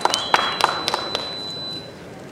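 A fencing bout just after a scored touch: a few sharp taps about a quarter second apart, like light clapping or steps, over a thin steady high tone that stops near the end.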